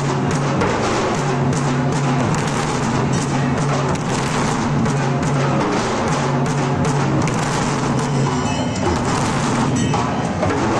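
Dhol and tasha drums beaten continuously in a fast, dense rhythm, loud and unbroken throughout, with a low droning tone coming and going beneath the beat.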